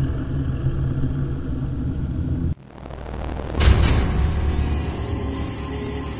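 Dark, ominous horror intro music built on a low rumbling drone; it cuts off suddenly about two and a half seconds in, then comes back with a deep boom a second later and rumbles on.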